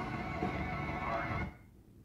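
Film soundtrack, music and effects, playing from a television's speakers; it cuts off abruptly about one and a half seconds in, as the channel changes.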